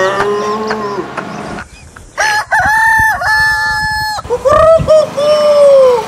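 A man's voice imitating a rooster crowing, in long, held, pitched calls from about two seconds in.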